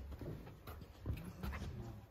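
Low thumps and rustling of handling and footsteps, with faint murmured voices.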